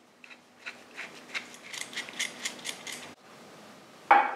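Stainless steel exhaust clamp bolt turned by hand through its barrel fittings: a run of light metallic clicks, about four a second, that cuts off suddenly a little after three seconds in.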